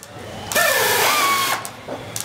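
Cordless drill motor whirring in a burst of about a second, its whine sliding down and back up in pitch as it speeds and slows.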